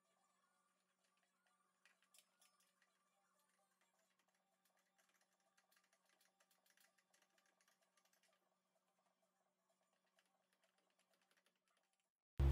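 Near silence: the sound track is muted.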